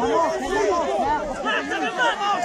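Crowd of spectators shouting over one another, many voices at once with no break.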